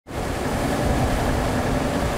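Steady wind and sea noise with a low rumble, recorded from a boat on open water.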